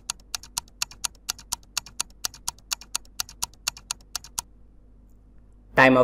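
Quiz countdown-timer sound effect ticking evenly, about four ticks a second. The ticking stops about four and a half seconds in as the countdown runs out.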